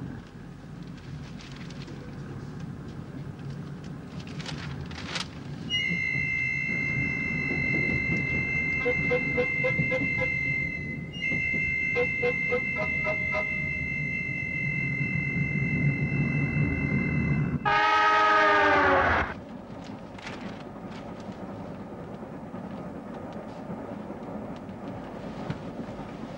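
Passenger train running with a steady low rumble and some wheel clatter. A high steady two-note tone holds for about twelve seconds, broken once midway. About eighteen seconds in comes the loudest sound, a horn blast that falls in pitch as the train passes.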